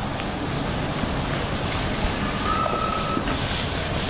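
Felt duster wiping marker off a whiteboard in quick repeated strokes, a hissy rubbing, with a thin steady tone for about a second midway.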